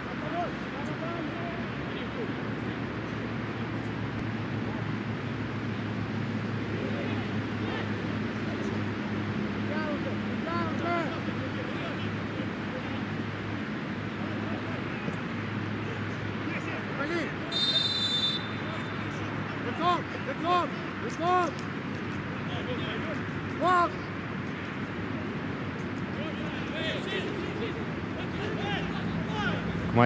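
Pitch-side sound of a football match with no crowd: a steady low hum, players' short shouted calls several times, and a brief shrill high tone about eighteen seconds in.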